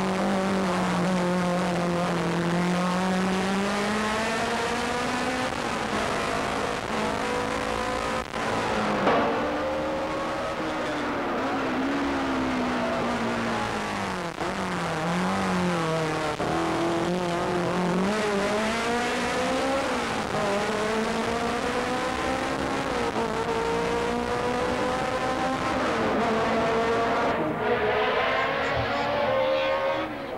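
BMW M3 race car's four-cylinder engine running hard, its pitch climbing and falling again and again as it accelerates, changes gear and slows for bends.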